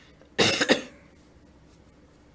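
A person coughing once, a short double burst about half a second in.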